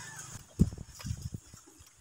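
Faint, irregular soft knocks and taps from a rebar grid being tied by hand with tie wire at the bar crossings.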